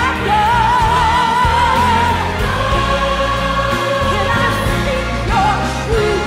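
A woman singing a gospel-style worship song with wide vibrato on a long held note, over a live band with drums and keyboard and backing voices.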